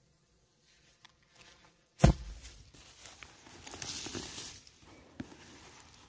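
Hand digging into loose sand at a burrow: a sudden sharp thump about two seconds in, then about three seconds of scraping and rustling of sand.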